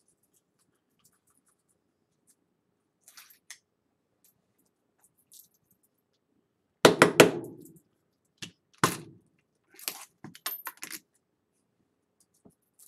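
Loose pennies clinking as they are picked up and dropped back onto a pile: a few faint clicks, then a louder clatter of several coins with a brief ring about seven seconds in, followed by more scattered clinks.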